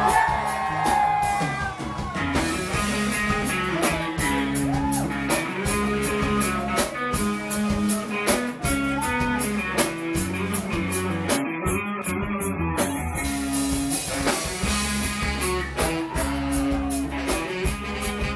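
Live reggae band playing a song: electric guitar and bass over a drum kit beat, with keyboard and saxophone in the mix.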